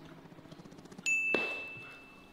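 A single bright 'ding' sound effect about a second in, ringing on one high tone and fading away over about a second and a half. It marks an on-screen calorie counter popping up.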